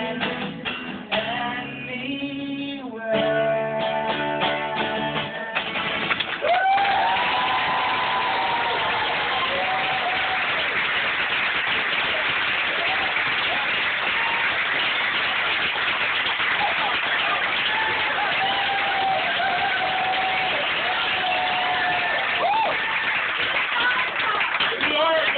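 Acoustic guitar strummed, closing a song with a few chords over the first five seconds or so. Then the audience breaks into steady applause and cheering, with whoops over the clapping, to the end.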